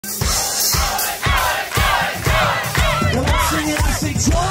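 Large crowd cheering and shouting over live band music, with a kick drum on a steady beat about twice a second.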